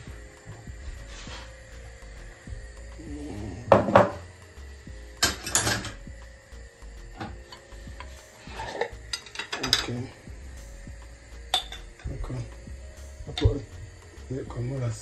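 Kitchen clatter of containers and a spoon handled against a frying pan on the hob: a handful of separate clinks and knocks a few seconds apart.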